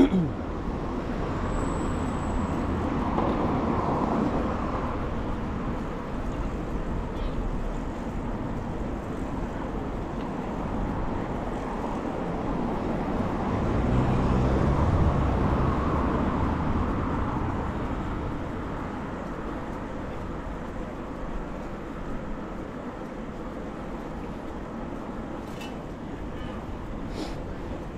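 City street traffic noise heard while cycling along the road, a steady rush of tyres and engines. It swells as a motor vehicle passes about halfway through.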